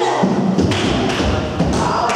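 Dull low thuds and rumble, about half a second in until near the end, over children chattering in a gym hall.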